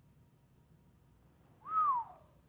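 Near silence, then near the end one short whistled note of about half a second that rises briefly and falls away.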